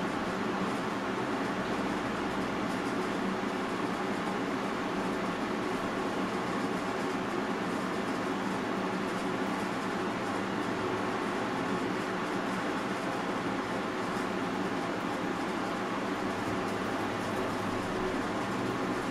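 Steady room noise: an even hiss like a fan or air handling, with a faint low hum underneath and no distinct events.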